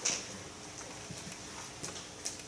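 A few faint, scattered clicks and taps, the sharpest one right at the start, over quiet room noise.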